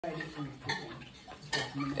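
Metal grille bars clinking and rattling as a dog tugs a cloth through them, with a sharp clink about two-thirds of a second in and another near 1.5 seconds. Underneath runs a low, broken growl from the dog at play.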